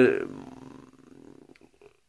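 A man's drawn-out hesitation vowel trails off just after the start, followed by a pause with only faint low room noise that fades almost to nothing near the end.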